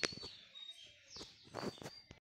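Faint high bird chirps in the background, with a few sharp clicks, the loudest at the very start and more about a second and a half in.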